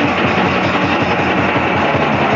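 Fast, heavily distorted punk/hardcore rock: dense distorted guitars over rapid, evenly pulsing drums, transferred from a cassette tape.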